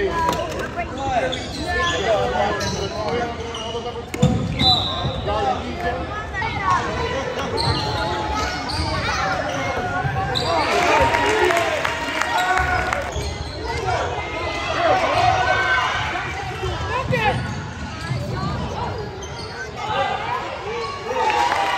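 Basketball dribbled and bouncing on a hardwood gym floor during play, with indistinct calls and chatter from players and spectators throughout.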